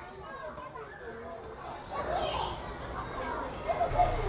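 Faint background chatter of several people, with children's voices among them.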